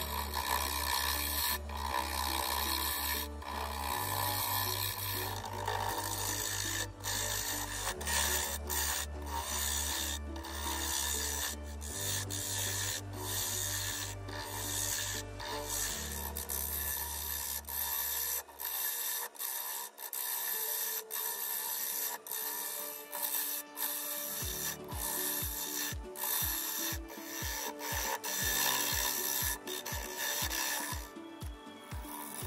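Turning gouge cutting a spinning walnut bowl blank on a wood lathe: a continuous scraping hiss with frequent small ticks as the edge takes shavings. Background music with a steady bass runs underneath, drops out for a few seconds past the middle, then returns as a pulsing beat.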